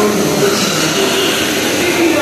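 Dental unit equipment running in a dental ward during scaling: a steady, loud rushing whir with a faint low hum.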